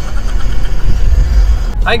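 Steady low rumble inside a car's cabin, engine and road noise, with a man's voice starting near the end.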